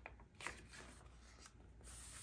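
Faint rustle of a Midori MD notebook's paper page being turned by hand, with a brief louder brush about half a second in and another near the end.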